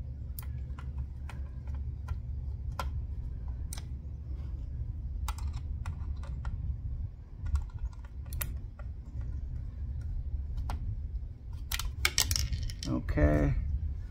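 Scattered light clicks and taps of a screwdriver and small plastic parts as screws are worked out of a trolling motor's control head housing, over a low steady rumble.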